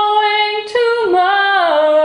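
A woman singing an unaccompanied ballad: a long held note, a brief break, then the melody steps down to a lower held note.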